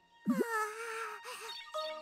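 A cartoon character's drawn-out vocal moan of dismay: the pitch sweeps sharply up, then holds and wavers for about a second. Background music comes in near the end.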